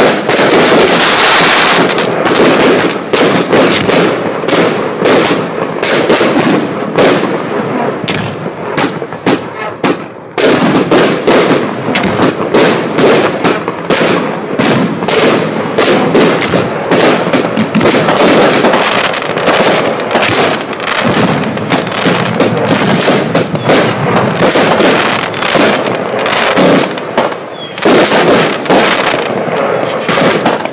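Fan-Tastic 103-shot cake firework from Celtic Fireworks firing its barrage: shots and bursts in quick, nearly continuous succession, with a brief lull about ten seconds in.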